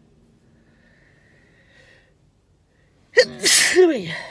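A woman sneezes once, loudly and suddenly, a little after three seconds in.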